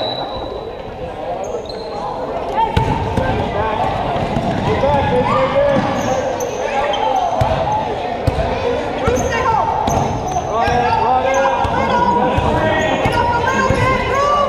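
A basketball being dribbled on a hardwood gym floor, with repeated bounces from about three seconds in, under the shouting and talk of players, coaches and spectators in a large gym.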